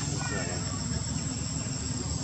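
Steady high-pitched insect drone with a low rumble underneath. The tail end of a voice is heard in the first half second.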